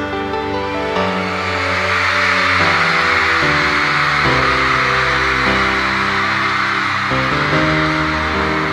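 Live band playing slow, sustained keyboard chords that change every second or so, with a crowd of fans screaming and cheering over it, the screaming swelling about a second in.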